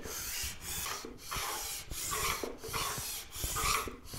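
Single-cut flat file, held square by a wooden block, rasping back and forth along the metal edge of a table saw's miter slot in about six even strokes of roughly two-thirds of a second each. The slot edge is being filed down because the miter guide bar sticks in it.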